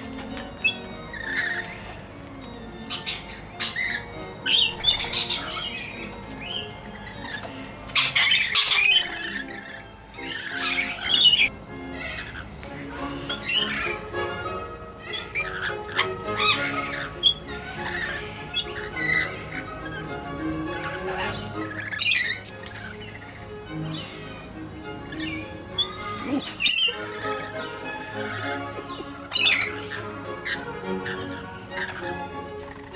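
Background music, with rainbow lorikeets calling in short bursts every few seconds over it.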